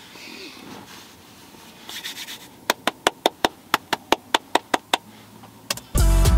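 A quick, even run of about a dozen sharp clicks, about five a second, from keys being pressed on a laptop keyboard, with two more clicks near the end and some rustling of handling before them. It is the sound of scrubbing back through a paused video.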